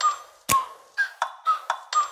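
Background music: the opening of a hip-hop beat, a quick pattern of short, clicky pitched notes with a kick drum about half a second in and again near the end.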